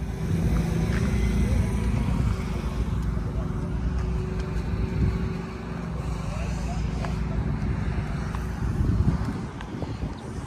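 Car engine running at idle, a steady low rumble that swells briefly near the end, with people's voices in the background.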